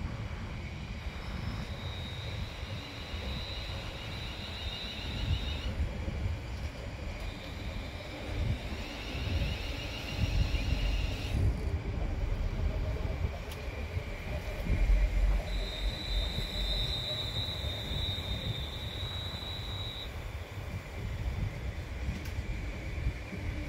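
London Northwestern Railway Class 350 electric multiple unit moving slowly past: a steady low rumble of wheels on rail, with high-pitched tones that start and stop several times, the strongest a long one in the second half.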